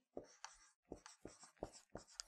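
Marker writing a word on a whiteboard: a string of faint, short strokes.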